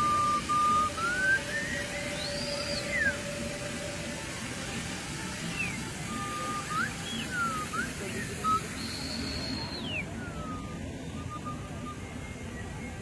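Whistle-like tones sliding up and down in pitch, some held for about a second and a few swooping quickly, over steady background noise.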